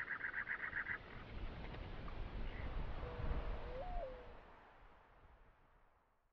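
Soft outdoor background noise with a brief buzzing trill in the first second, then a single low bird call about three seconds in: one drawn-out note that steps up in pitch and slides back down. The sound then fades out.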